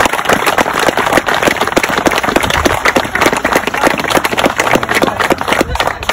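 Guests applauding, many hands clapping in a dense, steady patter.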